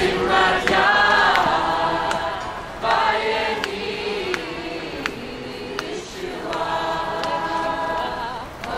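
A crowd of demonstrators singing together without instruments. The singing is strongest at first, thins out in the middle and swells again near the end.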